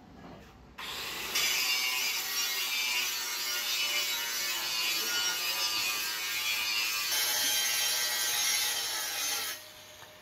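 Handheld angle grinder grinding the face of a round iron sheet blank for a pan, throwing sparks. It starts about a second in, runs steadily and cuts off near the end.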